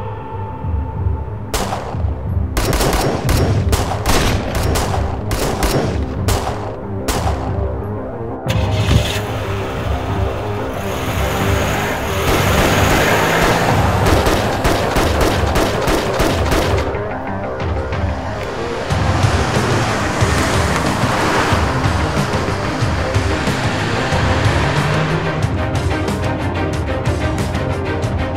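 Rapid gunfire, shot after shot for about seven seconds starting a moment in, over a dramatic film score. The shooting stops and the music carries on alone.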